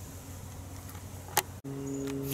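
Electric motor running with a faint, low, steady hum. There is a single sharp click about a second and a half in, then the hum gives way to a different, steadier tone.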